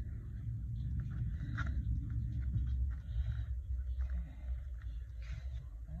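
Faint rustling and rubbing of paper and a glue stick as paper pieces are handled and pressed onto a journal page, over a low steady hum.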